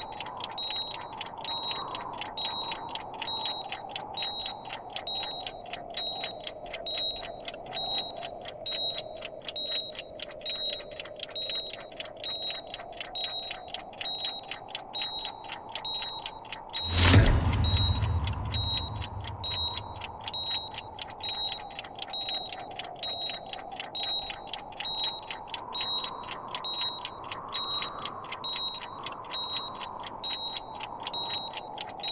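Suspense background score: a steady clock-like ticking, about three ticks a second, over a low wavering drone. A little past halfway, a loud swelling hit with a deep boom.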